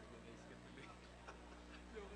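Near silence: faint, indistinct chatter of many people in a large room over a steady low hum, with a few light clicks.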